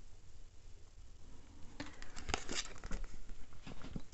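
Tarot cards being handled: light rustling, scraping and clicking of card stock, starting about two seconds in. Before that there is only a faint low hum.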